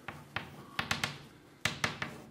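Chalk writing on a blackboard: a handful of sharp, irregular taps as the chalk strikes the board.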